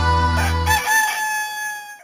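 A music jingle's sustained closing chord stops about a second in, overlapped by a rooster crowing: one long call that fades out near the end.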